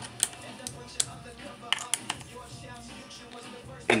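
Light metal clicks and taps, about half a dozen at irregular spacing, as a small metal workpiece is seated and clamped in a home-made aluminium slim vise on a Sherline mill table.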